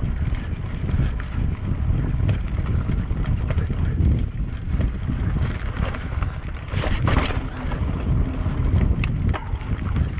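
Wind buffeting the microphone of a camera riding on a mountain bike, over the tyres rolling on a bumpy dirt path. Short rattling clicks come from the bike over the bumps, with a rougher stretch about seven seconds in.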